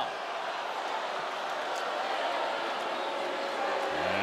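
Steady arena crowd noise, the blended voices of many spectators, heard on a basketball broadcast just after a foul is called.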